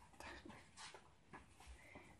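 Near silence with a few faint rustles of paper: the pages of a hardback book being leafed through.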